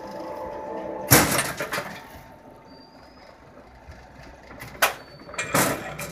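GW-50 electric rebar bending machine humming steadily as its turntable bends a steel bar; the hum stops about a second in with a loud metallic clatter. Two more sharp metal clanks near the end as the bent bar is handled on the machine.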